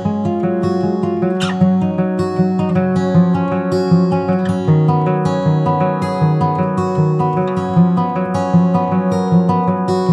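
Acoustic guitar playing the instrumental opening of a folk song: a steady, continuous run of quickly picked notes, with no singing.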